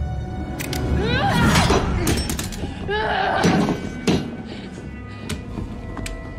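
Tense film score under a fight scene, with two pained cries about a second in and again about three seconds in, and several sharp thuds and crashes of blows and impacts.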